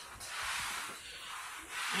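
Handling noise: a soft rubbing on the handheld phone's microphone for about a second and a half.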